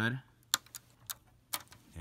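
Lego bricks clicking as a flat plate is pressed down onto the studs of a Lego Millennium Falcon model: a few short, sharp plastic clicks, loudest about half a second in and again about a second and a half in.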